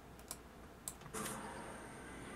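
A few computer keyboard keystrokes as shortcut keys are pressed, then a bit over a second in a steady hiss of background noise sets in.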